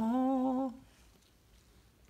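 A voice humming one steady note, a little under a second long, then quiet room tone.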